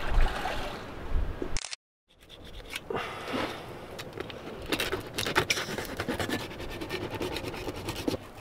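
Wind rumbling on the microphone for the first second and a half. After a brief cut, a knife saws and scrapes through the tough, armour-scaled skin of a triggerfish on a wooden cutting board in a run of short, scratchy strokes.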